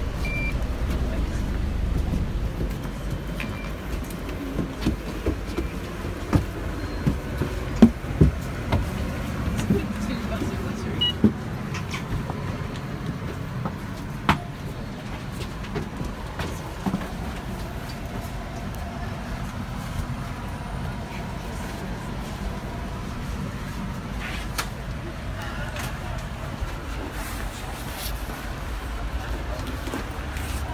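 Inside a London double-decker bus: a steady low engine and road rumble, with a run of sharp knocks and clunks in the first half.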